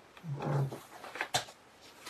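A brief, soft, low-pitched murmur from a voice, like a hummed "mm", followed a moment later by a single light click.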